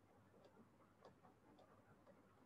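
Near silence: faint room tone with soft, regular ticks, a little under two a second.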